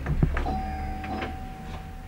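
A couple of quick knocks of things handled on an office desk, followed by a faint steady tone held for about two seconds over a low room rumble.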